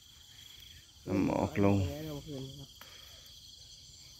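A steady, high-pitched chorus of insects chirring without a break, with a man's voice speaking briefly about a second in.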